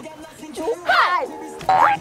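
Background music with a cartoon-style sound effect, a quick rising slide near the end, and a short burst of voice about a second in.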